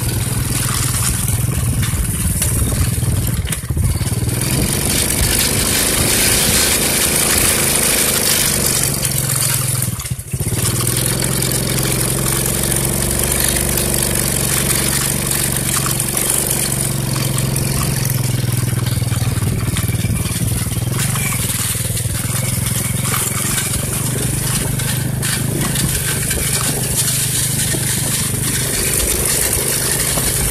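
Small motorcycle engine running steadily while riding a rough dirt track, with a constant hiss over it. The sound dips briefly about ten seconds in.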